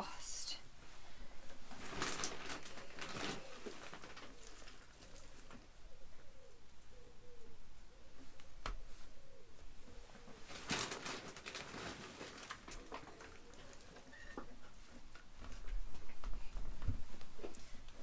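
Hands scooping and pressing coarse, wood-chippy potting compost around a dahlia tuber in a plastic crate: soft rustling and scraping in two main bursts, with a single sharp click in between.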